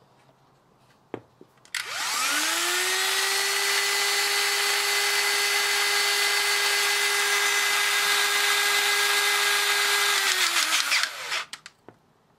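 Electric motor of a REC-CN58 Robo Crimp battery-powered hydraulic crimping tool. After a small click about a second in, the motor spins up with a rising whine, runs steadily for about eight seconds, then winds down near the end.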